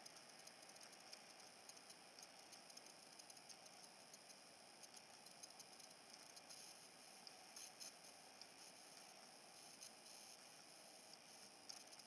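Near silence: faint room tone with scattered small, faint clicks.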